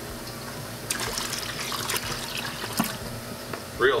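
Water trickling and dripping irregularly as the collection cup of a Tunze Comline DOC Skimmer 9012 is lifted out of the water, starting about a second in, over a steady low hum.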